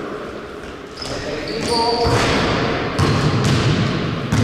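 A basketball bouncing on a hard gym floor, a few separate bounces in the second half, with a short call from a player just before them.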